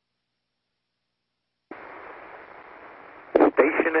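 Dead silence, then nearly two seconds in a radio channel keys open with a steady, narrow-band hiss of static, and a voice starts speaking over the radio link near the end.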